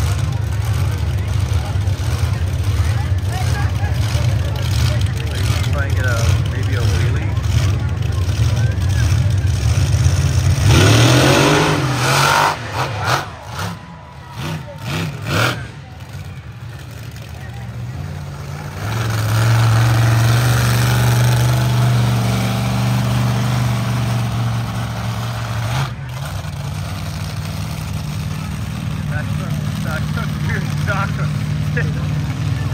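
Monster truck engines running loud, with a rev rising about eleven seconds in. The sound then drops and comes and goes for several seconds before a steady engine drone takes over from about nineteen seconds.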